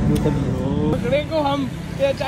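Background music ends about a second in, giving way to street noise with traffic and a voice.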